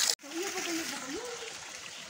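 Running tap water splashing onto noodles in a plastic basket, cut off suddenly just after the start. Then faint outdoor background with one low, wavering pitched sound.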